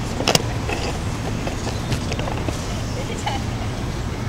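Outdoor city ambience: a steady low rumble of road traffic, with a brief burst of sharp clicks or clatter just after the start.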